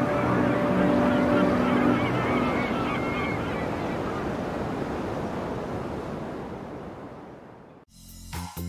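Sea surf with seagull cries at the close of a song. The last held notes of the music die away in the first few seconds, and the surf then fades slowly until it almost vanishes just before the end.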